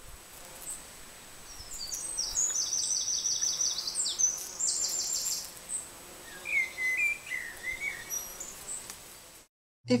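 Birds singing over steady outdoor background noise: a rapid high trill repeated a few times, then a few lower chirps, with the sound cutting off suddenly near the end.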